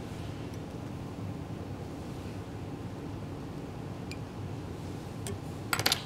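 Room tone: a steady low hum with a few faint ticks, and a short run of clicks near the end.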